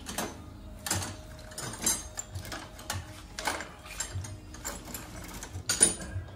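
Irregular clicks and knocks of an intake manifold and an aluminium cylinder head from a Peugeot 207 being handled and offered up against each other, about nine in all, with the loudest knock near the end.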